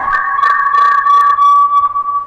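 Audio feedback whistling over a phone-in line: a steady high-pitched tone with a fainter second tone above it, held and then dying away just after two seconds. This is the typical sign of a caller's television being turned up near the phone.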